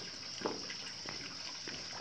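Faint water lapping and soft splashing from an armadillo paddling across a swimming pool, with a couple of small splashes.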